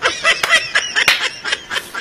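Snickering laughter in short bursts, mixed with several sharp clicks.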